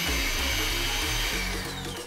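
Electric hand mixer running, its wire beaters whipping a creamed butter mixture in a glass bowl; a high tone falls near the end.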